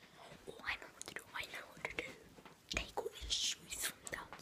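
A child whispering close to the microphone.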